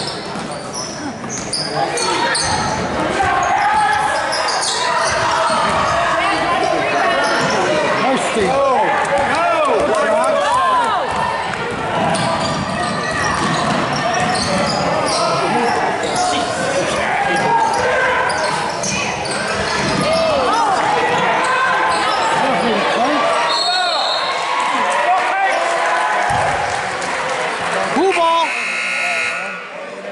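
Basketball game in a gym: a ball bouncing on the hardwood floor, sneakers squeaking, and players and spectators calling out in an echoing hall. A referee's whistle blows shortly before the end.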